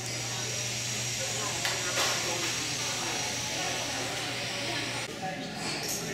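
Water-wall fountain: a steady hiss of water running down a ribbed stone face, dropping away suddenly about five seconds in.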